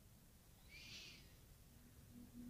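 Near silence: room tone, with one faint, brief high chirp about a second in.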